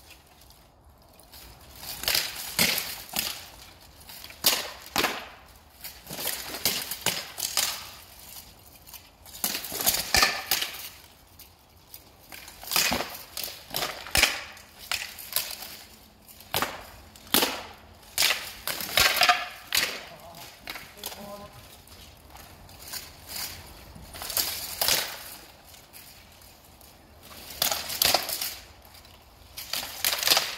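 Armoured longsword sparring: irregular sharp clanks and clatters of swords striking steel plate armour and each other, in quick runs and single hits.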